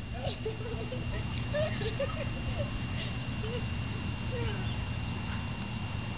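Faint, distant voices of people calling out, over a steady low rumble and a thin, steady high tone.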